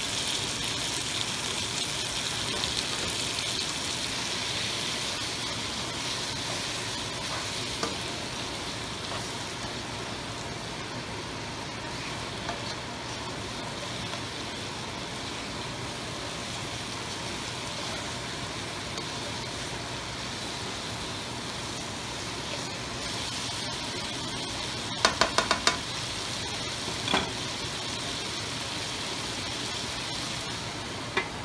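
Spiced chicken, potatoes, onions and freshly added chopped tomatoes frying in a nonstick wok: a steady sizzle while a spatula stirs. A quick run of sharp clicks comes near the end, then one more.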